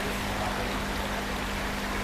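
Steady rushing water in a koi holding tub, with a faint low hum underneath.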